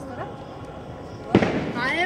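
A firecracker going off with one sharp bang about a second and a half in, which rings out briefly.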